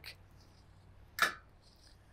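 A steel tape measure's blade pulled out, one brief rasp about a second in; otherwise very quiet.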